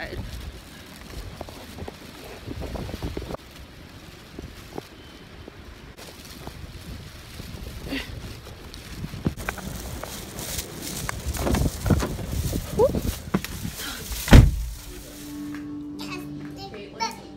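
Wind buffeting a phone microphone in gusts, strongest toward the end, with one loud thump shortly before the end.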